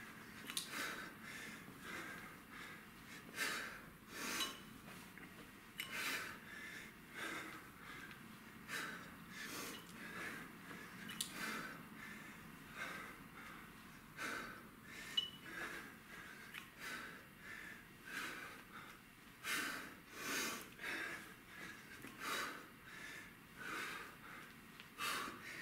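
A man breathing hard under exertion during a set of kettlebell snatches and thrusters: short, sharp exhales, roughly one or two a second, in an uneven rhythm with the reps.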